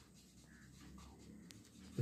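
Faint scratching of a marker pen writing a word on a white board, with a small tap about a second and a half in.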